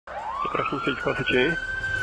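A siren winding up: one tone rises quickly over the first half second, then holds steady, with wavering sounds beneath it during the first second and a half.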